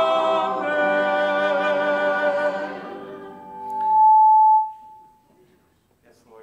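Church choir singing a held final chord that fades away about halfway through. Then comes a loud single steady tone that swells quickly and is cut off after under a second, the pattern of a PA microphone feedback squeal.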